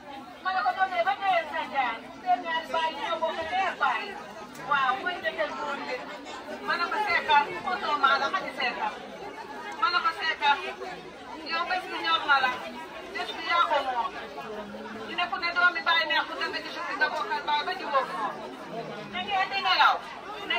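Several people talking and chattering, with overlapping voices.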